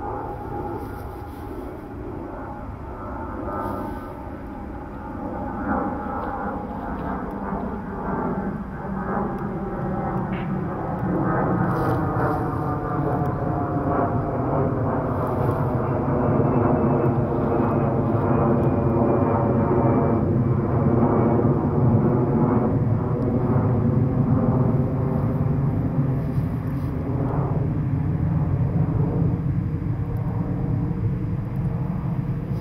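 Airbus A319 twin-engine jet airliner passing overhead while climbing at about 4,500 ft: a broad jet rumble that grows louder through the first half, peaks around the middle and eases slightly toward the end. Several tones within it slowly fall in pitch as it passes.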